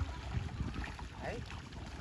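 Fish splashing and thrashing in shallow, muddy pond water, with wind rumbling on the microphone.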